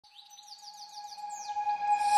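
A quick run of bird-like chirps, about six or seven falling chirps a second, over a steady held tone, fading in. The sound is the lead-in of an edited intro jingle.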